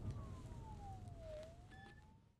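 Faint siren: one slow wail falling in pitch and then rising again, over a low rumble of a car. A short, steady higher tone joins near the end as the sound fades.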